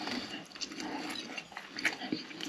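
Close-miked chewing with wet mouth clicks and smacks of a person eating. The loudest click comes near the end.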